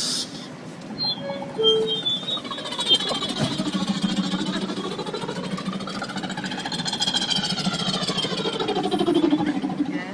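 A beatboxer's vocal imitation of a helicopter: a fast rotor chop that sets in about three seconds in, its pitch sweeping up and then back down, loudest shortly before the end.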